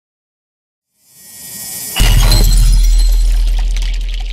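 A transition sound effect: a rising whoosh that ends about halfway through in a sudden loud crash, with a deep low rumble and a bright, glassy shimmer that slowly fades.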